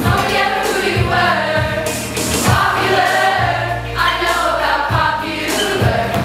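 A group of voices singing a pop song together over a backing track with bass and a regular beat.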